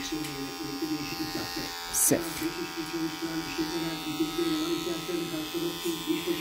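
Wahl Magic Clip cordless hair clipper running with a steady buzz as its blade works through short beard stubble on the cheek. A brief click sounds about two seconds in.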